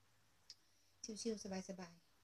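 A woman's voice speaking briefly from about a second in, after a single short click.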